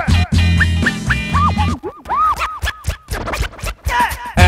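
Hip-hop turntable scratching, a record pushed back and forth in quick sweeps over a bass line and beat. About halfway through the beat drops out and only the scratches remain.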